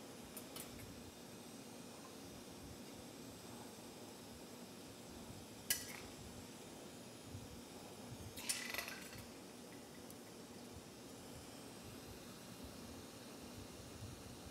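One sharp clink about six seconds in, then a short cluster of clinks and rattles a few seconds later: glass rods or hand tools knocking together at a flameworking torch bench. Under them, a steady low background hum.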